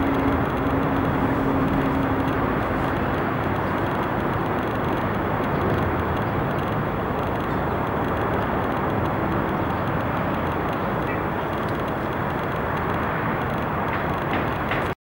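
Steady city traffic noise, an even rumble and hiss of vehicles with no single event standing out.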